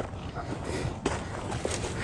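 Footsteps scuffing and crunching on loose dirt and dry leaves, with small irregular knocks and clicks.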